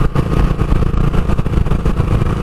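Wind buffeting the microphone of a moving scooter, with steady road and drive noise underneath.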